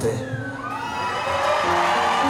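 Concert audience cheering and whooping, many voices rising together about a third of a second in; a sustained instrument note begins near the end.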